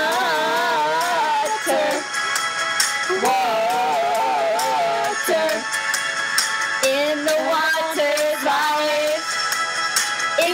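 Pop ballad backing track with two women singing long, wavering held notes off key, in three drawn-out phrases.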